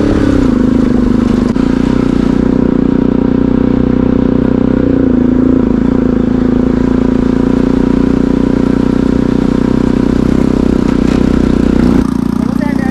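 Motorcycle engine running steadily while riding, its pitch dipping briefly near the start and again around the middle.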